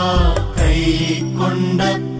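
Malayalam Christian devotional music: a sustained melody over instrumental backing.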